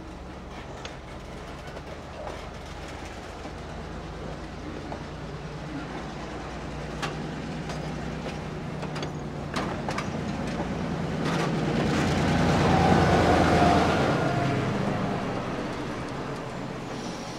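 Freight cars being moved through a railyard under a steady diesel locomotive drone, with scattered clanks and knocks from the cars. The sound grows louder to a peak a few seconds before the end as the cars pass close, with a brief high whine at the loudest point, then fades.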